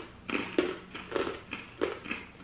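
Crunching as a hard, cracker-like grain-free pretzel is chewed: about four crisp crunches in two seconds.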